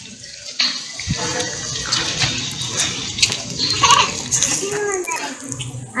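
Faint background voices, a child's among them, over a steady noisy hiss.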